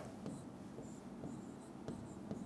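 Faint taps and scratches of a stylus writing a word on an interactive touchscreen display.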